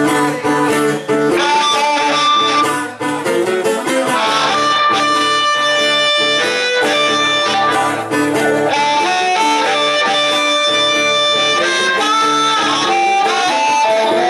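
Live acoustic guitar strumming a steady accompaniment, joined about a second and a half in by a harmonica played into a handheld microphone, with long held notes over the chords.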